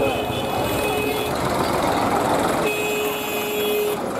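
Hubbub of a dense crowd at an open-air street fair. A steady high tone repeats over it, sounding for about a second at a time: once near the start and again from about three seconds in.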